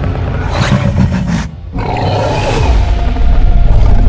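Tyrannosaurus rex roar sound effect over dramatic film music: two roars with a short break about a second and a half in, the second one louder toward the end.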